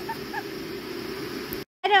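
A steady low mechanical hum with a few faint short sounds above it. The sound cuts out abruptly near the end, and a woman starts speaking.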